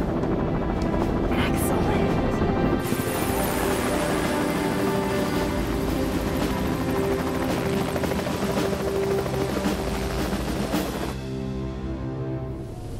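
Helicopter rotor and engine noise, steady and loud, with a background music score over it; about three seconds in the noise grows brighter and hissier, and near the end it fades away, leaving the music.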